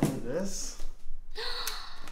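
A person's short vocal sounds at the start, then a sharp, excited gasp about a second and a half in.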